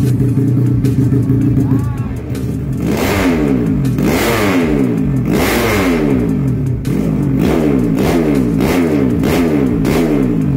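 Modified underbone ('bebek') grasstrack motorcycle engine with an aftermarket racing exhaust, idling steadily, then revved in repeated throttle blips about once a second from about three seconds in, each one rising and falling in pitch, as the bike is being tuned.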